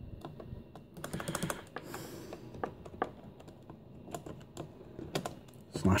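Typing on the Compaq LTE 5280 laptop's built-in keyboard: a quick run of key clicks about a second in, then scattered single keystrokes.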